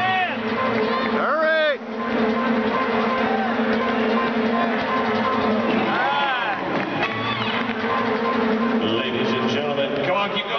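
Basketball arena din during a dribbling race: crowd voices with music over the arena speakers, and sneakers squeaking on the hardwood court several times, the loudest squeak about a second and a half in.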